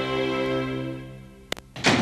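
A held chord of music fades out, then a click and a single loud thunk near the end as a pair of metal double doors with push bars swing shut.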